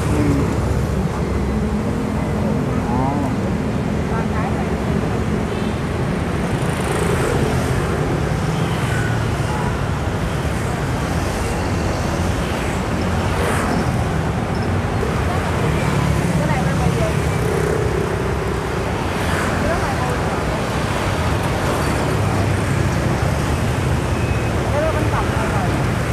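Steady road traffic noise from a busy city street, mostly motorbikes passing close by, with faint voices underneath.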